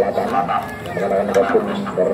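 Voices talking, the words not clear.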